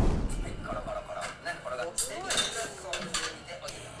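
Light clinks of kitchen dishes and utensils, a few brief ones, under faint speech.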